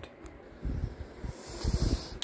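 Handling noise as a camera is moved and set on its stand: a few low bumps and rubbing on the microphone, with a brief hiss near the end.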